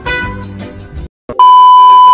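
A music clip that cuts off about a second in; after a short gap, a loud, steady, high test-pattern beep tone, like the tone played over TV colour bars, starts and holds.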